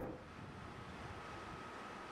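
Faint, steady background noise of a bus cabin: an even hiss with a faint steady high tone.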